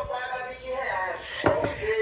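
A high-pitched voice in the background, quieter than the mother's speech that follows, with a single sharp knock about one and a half seconds in.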